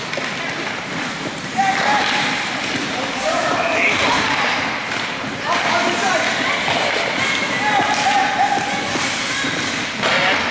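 Ice hockey play in an echoing arena: indistinct shouts and calls from players and onlookers, several of them drawn out, over a steady hiss of skates on the ice with occasional knocks of sticks, puck and boards.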